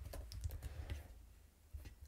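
Typing on a computer keyboard: a run of light key clicks that thins out after the first second, then one more click near the end.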